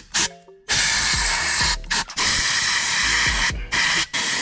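Can of compressed air hissing in several long bursts through its straw into the downshift paddle-shifter mechanism of an Audi R8 steering wheel, starting just under a second in. It is blowing out debris suspected of stopping the paddle from engaging downshifts reliably.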